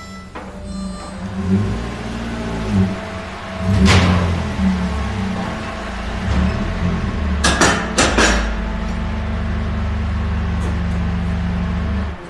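Car engine of a modified rally-style sedan running as the car drives into a workshop, changing pitch as it moves, with a sharp loud blip about four seconds in and three more quick ones near the middle, then settling into a steady idle for the last few seconds.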